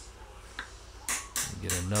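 A faint click, then two sharp metal taps in quick succession as pliers strike a tight push pin in the KWA LM4's body to drive it out, followed by a man's voice.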